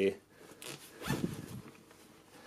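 Zipper on a fabric bag's pocket being pulled open, in short rasps with the strongest about a second in.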